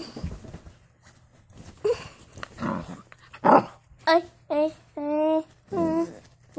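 A dog vocalizing: two rough, noisy bursts in the middle, then from about four seconds in a run of short pitched calls, each dropping in pitch.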